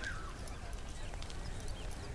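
Outdoor ambience: short bird-like chirps over a low murmur of background voices, with a few faint clicks.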